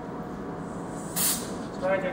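A short puff of breath blown straight into a microphone: one brief hiss about a second in, louder than the room around it.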